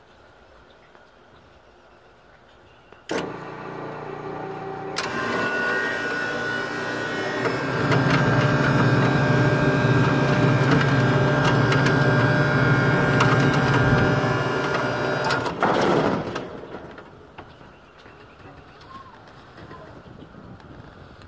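Scotsman ice machine starting up: a click about three seconds in, then a motor hum joined by a growing rushing noise that runs loud for several seconds and cuts out suddenly near the end. The machine starts and quits after a short run, which the owner says it does all day.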